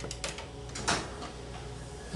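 A few sharp clicks of buttons being pressed on a studio tape machine's controls to cue up the tape, the loudest about a second in, over a low steady hum.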